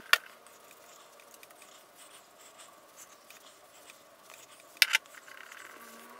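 Two short sharp clicks over faint room tone, one at the very start and one about five seconds in.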